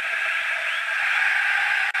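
Steady crowd noise from a packed football stadium, heard through an old TV broadcast's sound, with a brief break near the end.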